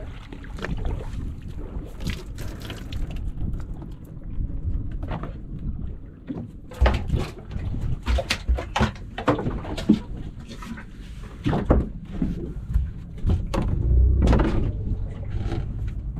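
Wind and water noise around a small wooden fishing boat at sea, then from about six seconds in a run of irregular knocks and thumps on the boat.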